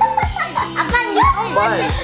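High children's voices chattering excitedly over background music with a steady beat.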